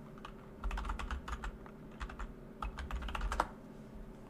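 Typing on a computer keyboard in two short runs of keystrokes, entering a web address.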